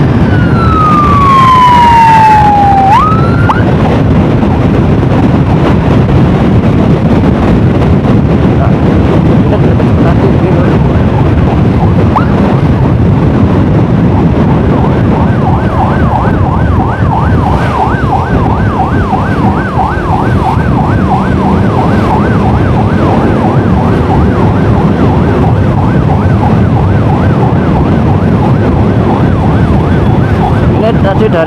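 An emergency siren falls in pitch in one long wail at the start, then from about halfway through switches to a fast warble of about three cycles a second. Underneath runs steady motorcycle engine and road noise.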